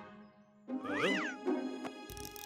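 A pull-string toy bunny's voice box gives a short warbling, meow-like call that rises and then falls in pitch, starting a little under a second in, over soft background music.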